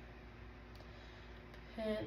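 Quiet room tone with a faint, steady low hum. A woman starts speaking near the end.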